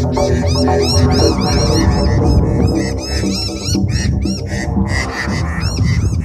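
Noisy miners and Australian magpies calling agitatedly in a flock, a rapid string of short, high, rising-and-falling chirps, over a loud low droning hum.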